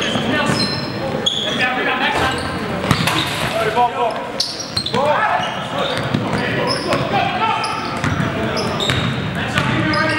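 Basketball being dribbled and bounced on a hardwood court, with sneakers squeaking and players shouting, echoing through a large gym.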